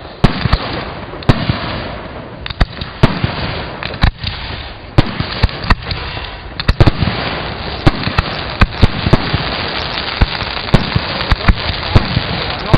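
Aerial fireworks shells bursting in quick, irregular succession: sharp bangs about two a second over a continuous noisy wash from the display, which grows denser about halfway through.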